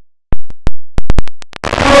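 The recording drops out to dead silence, broken by a string of several sharp, loud digital clicks over about a second and a half, before the gym sound comes back near the end. This is an audio glitch in the recording, not a sound in the gym.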